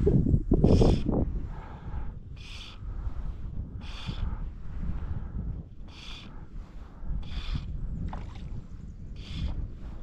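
Fly line being stripped in through the rod guides in short pulls, each pull a brief hiss, about every one and a half seconds, as the flies are retrieved. Wind rumbles on the microphone, loudest in the first second.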